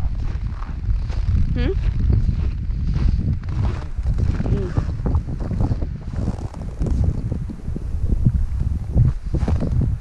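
Wind buffeting the microphone in a heavy, uneven low rumble, with footsteps crunching in snow.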